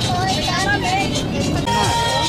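Background chatter of people talking, with music playing underneath and a low steady rumble. A held musical tone comes in near the end.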